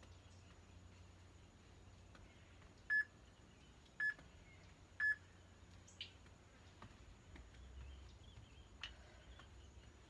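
Three short, high beeps from a workout interval timer, evenly spaced one second apart, counting down the end of the work interval. A couple of faint clicks follow.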